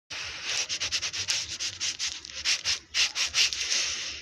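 Rapid, irregular rubbing or scratching strokes, several a second, with no pitch to them.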